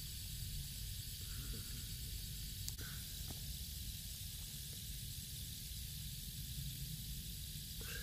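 Small stake-mounted orchard irrigation sprinkler spraying water: a steady hiss over a constant low rumble.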